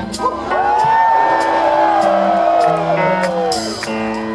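A rock band playing live, heard from the audience: steady held low notes under one long high sliding tone that rises, holds and falls away over about three seconds.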